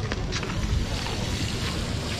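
Wind noise on the microphone over the general hubbub of a busy open-air street market.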